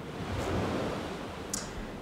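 Soft rushing air noise on a handheld microphone. It swells about half a second in and fades away, with a short click near the end.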